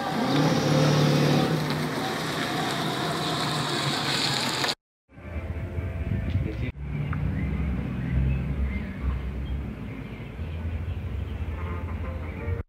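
A motor vehicle running on a road, loudest from about half a second to two seconds in, over steady outdoor noise. After a sudden cut near five seconds, a quieter outdoor background with a low rumble.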